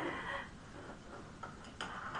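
A voice trails off, then a quiet studio with a few faint, short clicks.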